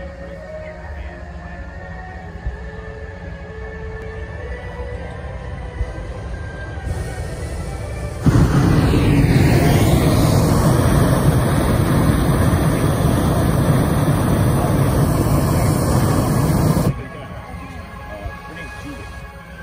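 Hot-air balloon propane burner firing close by in one long, loud blast of about eight seconds, starting suddenly about eight seconds in and cutting off sharply. Before it, event music and crowd voices can be heard at a low level.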